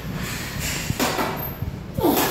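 A weightlifter's forceful, hissing exhale of strain while grinding a heavy barbell back squat rep. It comes about a second in, just after a short dull thud.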